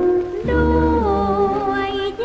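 An old Thai popular song recording with band accompaniment. A sustained, wavering melody line glides downward over the band, and a low bass note enters about half a second in.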